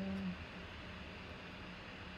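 A man's drawn-out voice trails off in the first moment, then faint steady room tone: an even hiss with a low hum.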